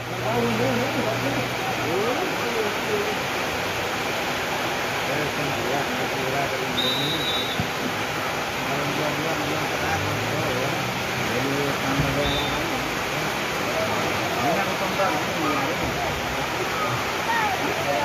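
A steady, loud rushing noise with faint, scattered shouting voices of players and onlookers.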